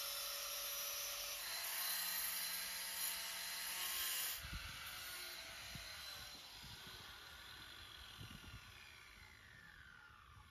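Angle grinder dry-cutting masonry: a steady high whine with grinding noise. A little over four seconds in it is switched off and the disc winds down in a falling whine over the next several seconds, with a few low thuds.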